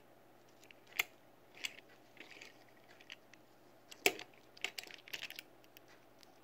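Small clicks and taps of a die-cast Matchbox Dodge Wreck Truck toy being handled and turned in the fingers. The sharpest taps come about a second in and about four seconds in, with a cluster of lighter clicks near the end.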